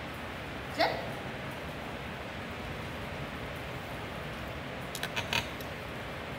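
Steady hiss of room tone in a lecture room, broken about a second in by one brief sound that slides down in pitch, and near the end by a short cluster of quick clicks.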